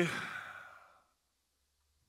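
A man's breathy sigh trailing off the end of his last word, fading out within about a second, then quiet.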